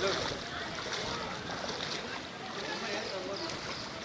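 Water sloshing and splashing around a person's legs as they wade step by step through shin-deep floodwater, with faint voices in the background.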